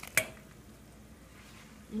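A single sharp click about a fifth of a second in, then a faint, steady hiss from a pot of water at the boil.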